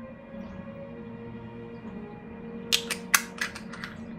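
Soft ambient background music with steady held tones. About three seconds in comes a quick run of seven or eight sharp clicks and taps, from makeup containers being handled on the table.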